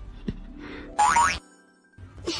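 Light background music, then about a second in a short, loud cartoon boing sound effect that rises in pitch.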